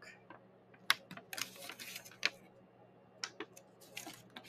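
Folded paper crackling and rustling as a glued origami squash book is pulled open and worked in the hands, with a few short, sharp crackles of the creases about a second in and again past the middle.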